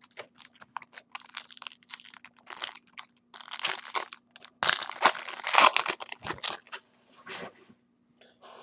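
Glossy Bowman Chrome baseball cards being shuffled and slid against each other by hand: a run of short scraping, flicking rustles, loudest in the middle.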